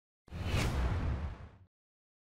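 A whoosh transition sound effect with a deep low rumble under it. It starts suddenly about a quarter second in and lasts about a second and a half.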